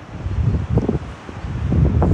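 Wind buffeting the microphone of the ride capsule's onboard camera as the capsule swings through the air, an uneven low-pitched rush that swells and dips.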